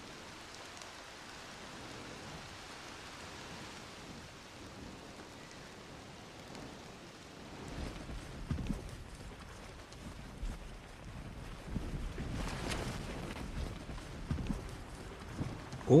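Wind on an outdoor microphone: a steady hiss, joined about halfway through by low rumbling gusts and irregular thuds.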